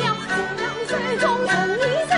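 Yue opera aria: a woman's voice singing a slow melody that slides and wavers in pitch, over bowed-string accompaniment.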